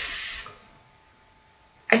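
A woman's breathy exhale, a short hiss of breath lasting about half a second, then near silence until she speaks again near the end.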